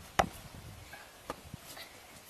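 A hand smacking a tetherball, one sharp slap just after the start, followed by a couple of fainter knocks.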